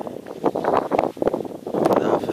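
Gusty wind buffeting the microphone in uneven surges.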